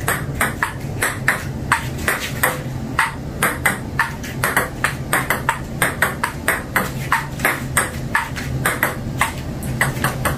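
Celluloid-style table tennis ball in a solo practice rally against a table folded into playback position: a quick, regular run of sharp clicks, about three a second, as the ball strikes the paddle, the tabletop and the upright half. A steady low hum runs underneath.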